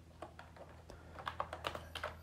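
Typing on a computer keyboard: scattered light keystrokes, coming faster toward the end.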